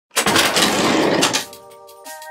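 Intro sound effect: a loud burst of noise lasting a little over a second, cut off sharply and followed by the sustained chords of intro music.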